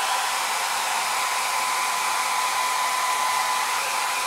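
Handheld hair dryer running steadily: an even rush of blown air with a thin, steady whine from its motor.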